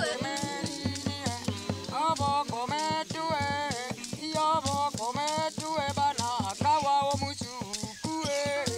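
Bayaka polyphonic group singing: several voices in short, interlocking notes that step up and down in pitch, over a low steady tone and a regular clicking percussion beat.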